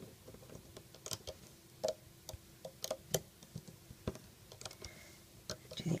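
Light, irregular clicks and ticks of a crochet hook tapping the plastic pegs of a Rainbow Loom as rubber bands are lifted and looped over them.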